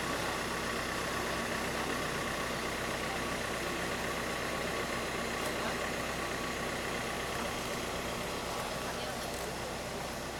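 A vehicle engine idling steadily, with faint background voices.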